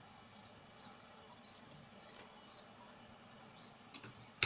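Faint bird chirping: short, high, falling chirps repeating every half second or so over low hiss. A sharp click comes near the end.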